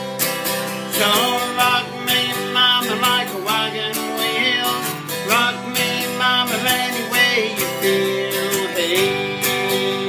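Acoustic guitar strummed in a steady rhythm, with a man singing over it from about a second in.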